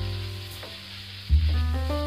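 Background music with deep bass notes, a new one about a second and a half in, followed by a short rising keyboard melody. Under it, a steady sizzle of leftover rice and garlic frying in a wok as it is stirred.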